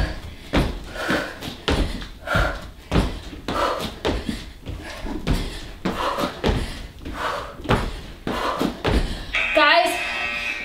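Feet and hands landing on a foam exercise mat and a dome balance trainer during fast burpees: repeated thumps, more than one a second, with hard breaths between them.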